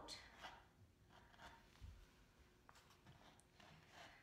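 Near silence with a few faint, short scratchy clicks and rustles: felt being cut out on a cutting mat.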